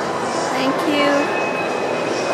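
Indoor shopping-mall ambience: a steady, echoing wash of background noise with distant shoppers' voices, a few brief voice fragments standing out about a second in.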